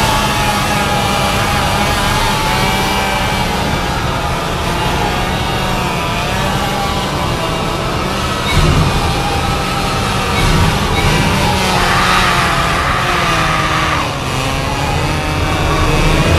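A chainsaw engine running steadily after a rising rev-up, mixed into a horror film soundtrack with wavering, drawn-out higher tones over it. The sound gets louder about halfway through.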